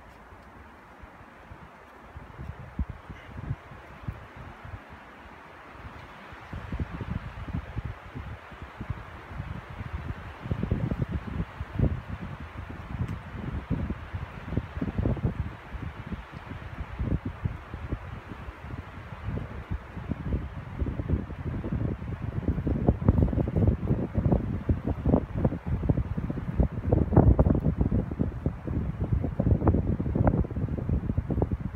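Wind buffeting the microphone in irregular low gusts that come in about six seconds in and grow stronger toward the end, over a steady rush of wind through pine trees.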